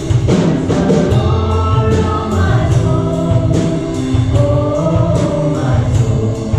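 Live contemporary worship song: women's voices singing held, sustained notes, backed by a band of keyboard, guitar and drum kit with a steady beat.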